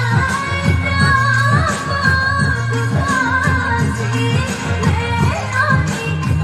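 A woman singing a dangdut song live into a handheld microphone, long wavering held notes over the band's steady bass beat.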